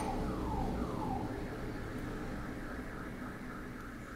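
A faint electronic siren in the background. It starts as a series of falling sweeps, about two a second, and about a second in switches to a faster, higher warble that runs on.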